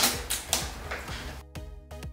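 Foil sachet being torn open and crinkled for about the first second and a half, followed by background music with quick repeated notes.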